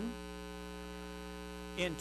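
Steady electrical mains hum, a ladder of constant even tones at an unchanging level, with a man's voice coming back just before the end.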